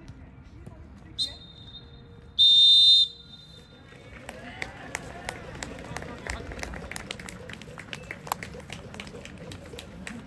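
Referee's whistle on a football pitch: a short toot, then one long loud blast about a second later, stopping play. After it come players' shouts across the pitch and scattered sharp knocks.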